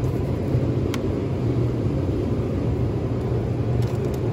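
A steady low rumble and hum, with one faint click about a second in.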